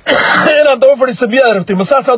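A man clears his throat behind his hand, a rough burst lasting about half a second, then goes on speaking.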